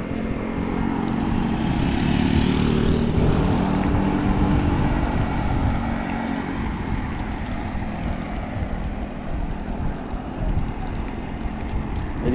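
Wind buffeting the microphone of a camera on a moving bicycle, with steady road noise. A low engine hum from traffic fades out about halfway through.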